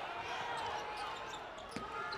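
Steady ambient noise of a basketball arena during live play, with a couple of faint knocks near the end.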